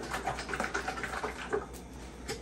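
Cooking oil pouring from a large plastic jug into a metal pot, splashing and gurgling in a fast, uneven stream that eases off near the end.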